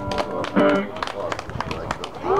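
Scattered hand clapping from a small group, mixed with people talking; a held musical note breaks off right at the start.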